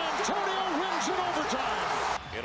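Basketball arena crowd cheering a game-sealing block, with a TV announcer's voice calling over the noise.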